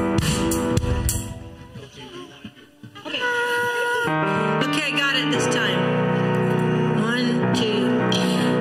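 Church band of keyboard, electric bass and drums playing. The music breaks off about a second in, leaving a quiet gap, then starts again about three seconds in with sustained keyboard chords and bass, and a voice comes in over them.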